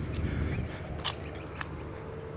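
Footsteps on gravel: a few short crunches, the loudest about a second in, over faint outdoor background noise.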